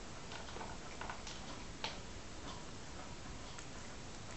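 Cat eating dry biscuits from a plastic bowl: irregular small crunches and clicks, the sharpest a little before halfway.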